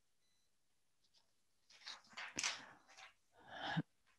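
Near silence for about two seconds, then a few faint breaths and a soft click, ending in an in-breath just before speech resumes.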